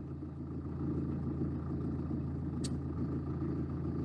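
Steady low rumble of a small waterfall and stream, with one brief faint click about two and a half seconds in.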